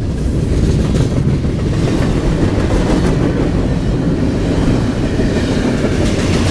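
Double-stack intermodal container train passing close by in a loud, steady rumble of rolling freight cars, with a few clicks from the wheels on the rails.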